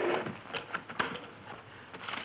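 A few sharp, scattered clicks and crackles over a steady hiss.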